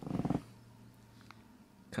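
A brief low, throaty voice sound lasting under half a second at the start, then quiet.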